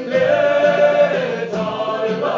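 A group of men singing a Turkish song together, holding one long note for over a second before starting the next phrase, with a strummed acoustic guitar underneath.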